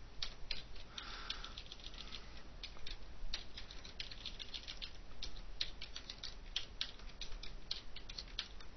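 Typing on a computer keyboard: irregular key clicks, several quick runs with short pauses between them.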